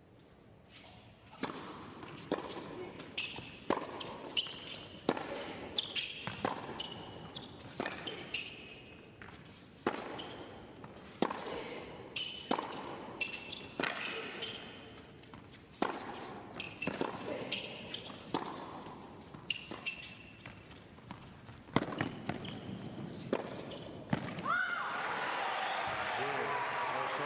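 A long tennis rally on an indoor hard court: racket strikes and ball bounces in a steady back-and-forth rhythm, with short high squeaks between hits. The rally ends with the point won by a passing shot, and crowd applause starts near the end.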